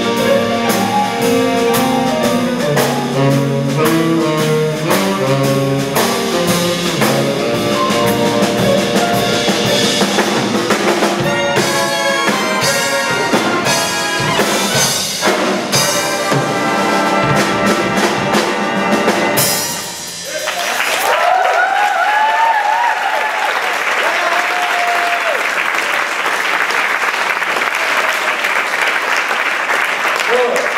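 A student jazz big band (saxophones, trombones, trumpets, piano, guitar, upright bass and drums) playing the close of a tune, ending with a final hit about two-thirds of the way in. Audience applause follows and runs on after the band stops.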